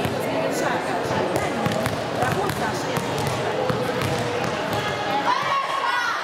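Many overlapping voices of children and adults chattering in a large sports hall, with a handball bounced on the hall floor now and then.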